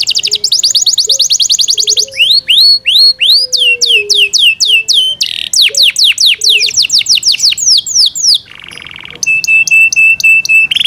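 Yorkshire canary singing loudly in a continuous song. It opens with a fast trill of falling whistles, moves to slower down-slurred notes, breaks into a short harsh buzz near the end, then finishes on a quick run of repeated even notes.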